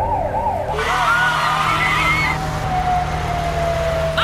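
Sirens wailing in fast up-and-down sweeps, with a second, higher siren joining about a second in and a long, slowly falling tone near the end, over a steady low hum.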